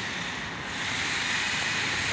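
Steady rushing background noise with no distinct events, growing slightly louder about halfway through.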